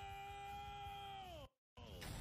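The playing video's audio stalling as it buffers: a steady buzzing held tone with many overtones that sags in pitch and cuts off about a second and a half in, followed by a dead dropout and a brief burst of noise.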